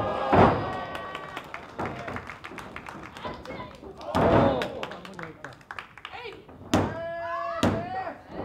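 Wrestlers' bodies slamming onto the ring canvas: a heavy thud from a dive off the top rope just after the start, and another from a throw about four seconds in, each with loud shouts from the wrestlers. Near the end come two sharp slaps about a second apart, typical of the referee's hand hitting the mat in a pin count, while the audience claps throughout.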